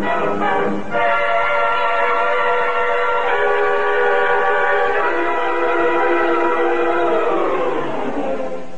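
Orchestral film score: short repeated brass stabs give way to loud, sustained brass chords that change twice, then slide down together in pitch near the end.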